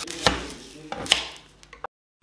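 Kitchen knife cutting an onion on a wooden cutting board: two sharp chopping strikes about a second apart, then a few lighter taps.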